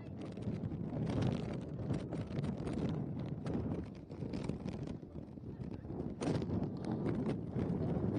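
Wind buffeting the microphone as a low, uneven rumble, with scattered knocks and one sharper knock about six seconds in.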